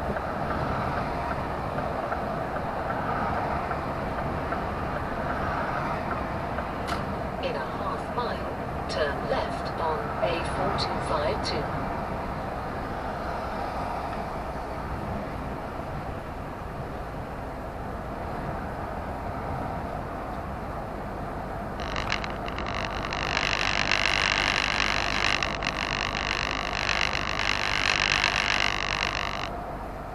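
Lorry cab interior on the move: steady engine and road noise, with a few short squeaks and clicks about eight to eleven seconds in. A loud hiss starts about 22 seconds in and cuts off suddenly some seven seconds later.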